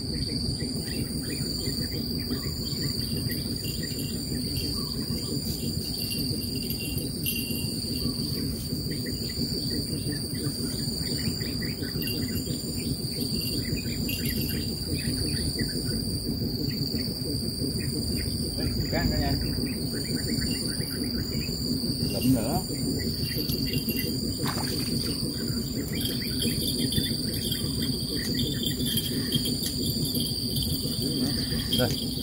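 A steady, high insect chorus runs throughout, in two pulsing bands, over a steady low rumble, with a few faint knocks in the second half.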